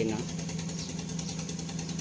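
An engine idling steadily: a low, even hum with a fine, regular clatter.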